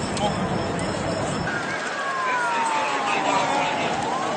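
Emergency vehicle siren wailing, its pitch sliding slowly down over about two and a half seconds, over a murmur of bystanders' voices. Before it, a low engine-like hum stops about one and a half seconds in.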